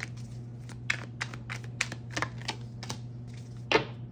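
A deck of tarot cards being shuffled by hand: a run of light card clicks and snaps, about three a second, with a louder slap near the end.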